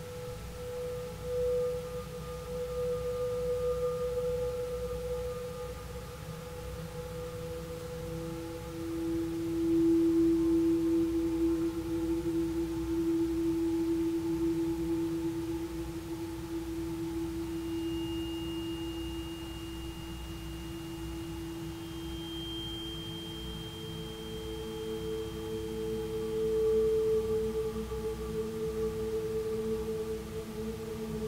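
Ambient improvised music of long, sustained pure tones from bowed metal and crystal singing bowls, overlapping and handing over one to the next. A lower tone swells in about a quarter of the way through and holds, and thin high tones join after the midpoint, all over a steady low rumble.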